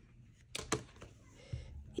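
A black leather B6 planner cover being closed around a paper planner and handled: a few soft taps and leather rustles, the sharpest a short tap a little under a second in, against quiet room tone.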